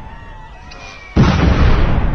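Sound effect of falling bombs: thin whistling tones gliding downward, then a sudden loud explosion a little past halfway, its deep rumble running on.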